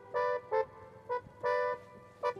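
Live norteño-style band music: an accordion plays short, detached chords, about five in two seconds.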